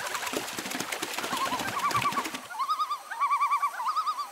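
Splashing and flapping on water for the first couple of seconds. Then a repeated warbling animal call, short wavering trills coming in quick phrases, which carries on to the end.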